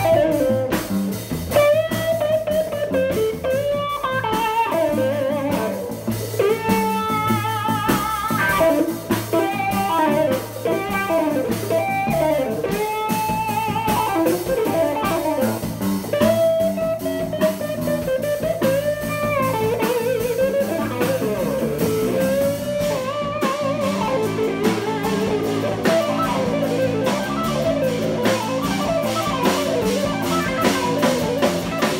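Live instrumental trio: a Stratocaster-style electric guitar plays a melodic lead line with bends and vibrato over electric bass and drum kit. Regular cymbal strokes come forward in the last several seconds.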